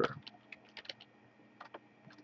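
Computer keyboard typing: a quick run of separate key clicks, with a short pause after about a second before a few more keys.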